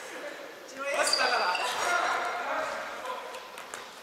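Futsal players calling out to each other across an indoor court, echoing in a large sports hall. Loudest about a second in, with short knocks of the ball on the wooden floor.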